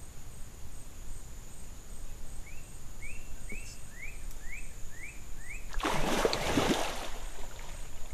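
A bird gives a run of about seven short rising chirps over a steady high tone. Near the end comes about a second and a half of loud water splashing as an alligator thrashes through shallow swamp water with a Burmese python in its jaws.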